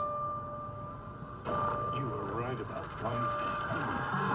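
Movie trailer soundtrack: a steady electronic tone that drops out briefly twice, with wavering voice-like sounds layered over it from about a second and a half in.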